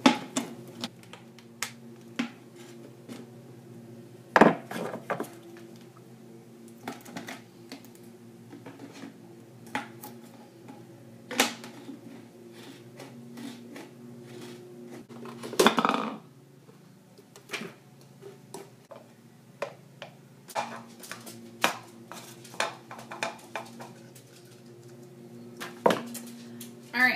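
Thin plastic soda bottle being cut around with a craft knife and handled: scattered crackles, clicks and knocks from the plastic, with a few louder cracks, the strongest about four seconds in and again about sixteen seconds in.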